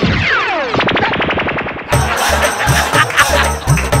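Comic sound effects from the show's edit: two falling whistle-like zaps with thumps, then a rapid gunfire-like rattle. About two seconds in this cuts to loud background music with a steady bass beat.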